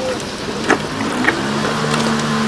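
Wet squelching and clicking of gloved hands turning battered chicken pieces in a plastic tub. A steady engine-like hum comes in a little past a second in.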